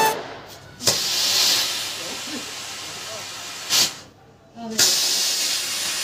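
Firework rocket hissing as it burns, with a sharp pop a little before the four-second mark, a short lull, then a louder, steady hiss of the rocket spraying flame.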